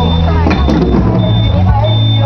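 Children's drum performance: loud, distorted backing music over loudspeakers, with voices, a few drum strokes and a high beeping tone that repeats about every two-thirds of a second.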